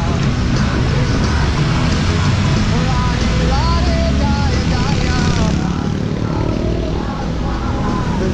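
Steady low rumble of city traffic and wind noise while riding a bicycle on a wet road, with a wavering sung melody like devotional chanting running over it; the hiss above the rumble fades about five and a half seconds in.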